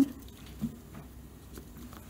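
Faint, sparse ticks and light rubbing of fingertips and nails pressing a tiny glued part onto a small wooden block on a tabletop.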